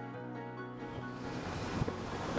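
Sustained background music fades out, and about a second in a steady rush of wind and road noise from a moving vehicle takes over.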